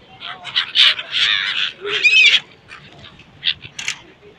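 A flock of gulls calling: a quick run of harsh, overlapping calls for the first two and a half seconds, then a few short calls near the end.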